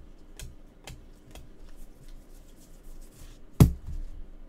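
Gloved hands handling trading cards and plastic card holders on a tabletop: a run of light clicks and taps, then one loud knock near the end.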